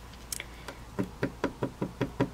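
A run of light knocks on a hard surface. They start faint and then fall into an even rhythm of about five a second.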